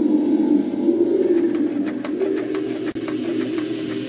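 Low cooing bird calls, with a run of faint clicks through the middle.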